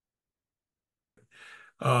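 Dead silence, then a man draws a short breath about a second and a half in, just before he starts speaking.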